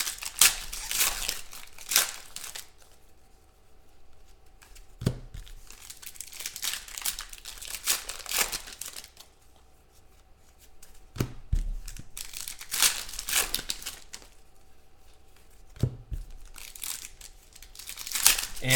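Foil trading-card pack wrappers tearing and crinkling in repeated bursts as packs are opened and the cards handled. About three short knocks come through along the way.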